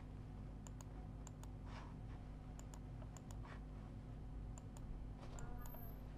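Scattered light clicks, about a dozen over several seconds, from repeated presses on a computer input device, over a steady low hum. The presses are not getting the lecture's writing software to respond.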